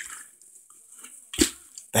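A partly filled plastic water bottle flipped and landing on a bed, one sharp thud with a slosh of water about one and a half seconds in; it lands upright.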